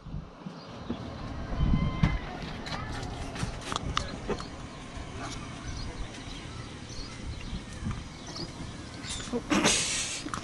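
Handling noise from an action camera being moved and repositioned: rubbing, scattered clicks and knocks on its body, over a low steady rumble, with a louder burst of noise near the end.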